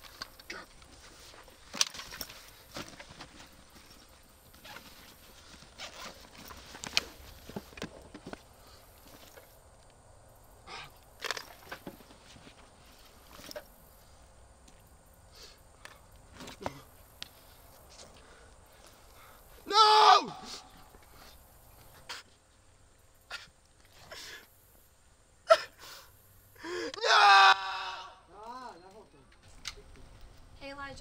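Faint outdoor quiet with scattered small clicks and rustles, broken by a person's loud anguished yell about twenty seconds in and a longer, wavering yell a few seconds before the end.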